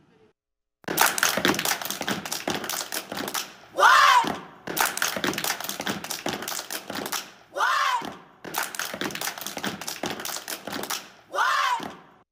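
Step team stepping: rapid rhythmic stomps and hand claps, broken three times, about every four seconds, by a loud shouted call.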